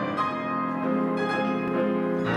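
Grand piano playing a slow song introduction: held chords with ringing high notes, a new chord struck about a second in.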